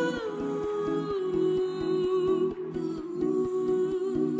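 Background music with a steady beat under a long held melody note that bends in pitch near the start, then stays level.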